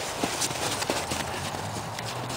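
Footsteps of two people running through snow: a quick, uneven series of steps.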